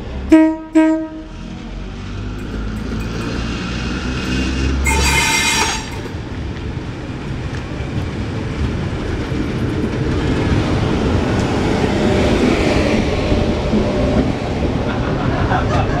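A vintage Sydney red electric train gives two short horn blasts and pulls away from the platform. Its low running rumble and the sound of its wheels and carriages build steadily as the cars pass close by, with a few faint wheel squeaks near the end.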